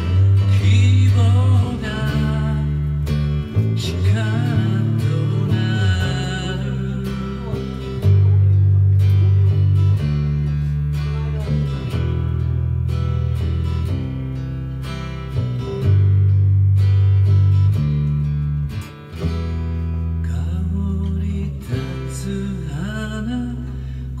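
An acoustic guitar strummed in a steady rhythm over a bass guitar holding low notes that change every second or two, a live duo playing a song.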